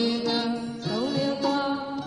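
Music: a voice chanting a melody, holding notes and sliding between pitches.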